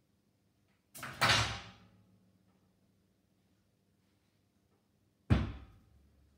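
Two loud bangs: the first about a second in, with a doubled start and dying away over about half a second; the second sharper, about five seconds in, fading quickly.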